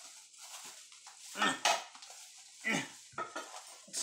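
Household items and packaging being handled and moved about, giving a few short clatters and rustles.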